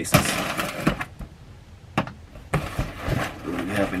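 Knife cutting open a cardboard shipping box: a rasping scrape through the first second, a sharp click about two seconds in, then cardboard and packing paper rustling as the box is opened.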